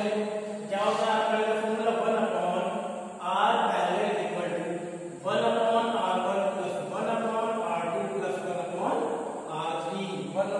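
Chanting in long, held, sung phrases, a new phrase about every two seconds, over a steady low drone.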